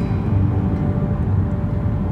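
Steady low rumble of a car driving on the road, heard from inside the cabin.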